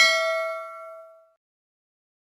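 Notification-bell "ding" sound effect from a subscribe-button animation. It is one struck chime with several overtones and fades out over about a second.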